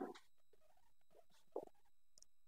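Near silence, broken by two faint, brief handling noises about a second and a half apart, as hands work at a satellite dish's mount.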